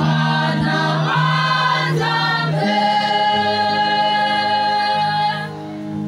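Choir singing through handheld microphones, moving through a few chords and then holding one long chord from about halfway, which fades just before the end.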